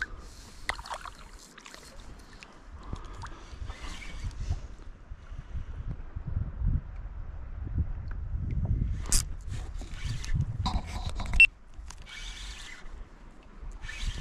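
Handling a kayak on calm water: splashes of the paddle in the water and a few sharp knocks against the kayak hull, the loudest about three-quarters of the way in, over a low rumble of wind on the microphone.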